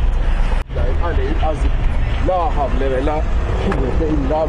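Low steady rumble of a motorcycle riding in traffic, cut off abruptly less than a second in; then a person's voice in short phrases over continuing low traffic rumble.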